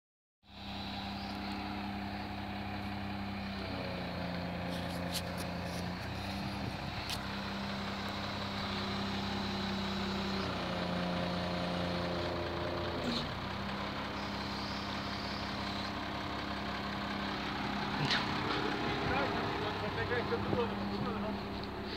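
Dresser crawler excavator's diesel engine running steadily while it holds the slung boat, its note stepping down and back up several times as the load on it changes.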